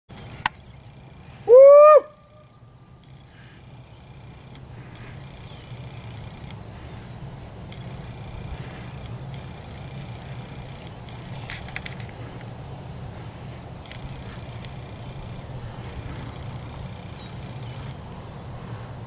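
A steer bawls once about one and a half seconds in, a short call that rises and then falls in pitch. After it comes a steady low outdoor rumble.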